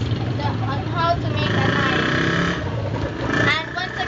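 Women talking in conversation, over a steady low hum.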